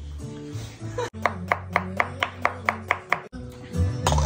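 A knife chopping cucumber on a wooden cutting board: a quick, even run of about nine chops at roughly four a second, starting about a second in, over background music.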